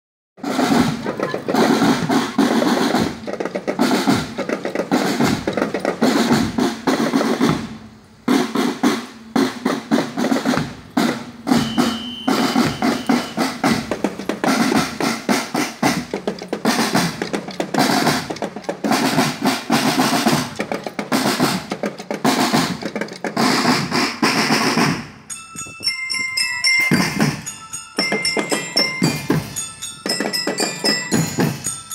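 School marching drum band playing: snare and marching drums beating a fast, dense rhythm with rolls. About 25 seconds in, the drumming thins and high, ringing melodic notes come in.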